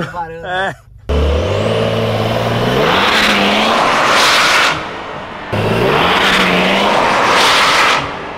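Yellow Porsche 911's flat-six engine revving hard as the car accelerates away, its note rising twice, with a brief lift off the throttle about halfway through.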